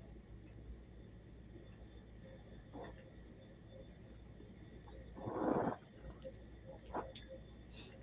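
Mostly quiet room tone, broken about five seconds in by a short breathy sound from a person tasting whiskey, with a few faint ticks around it.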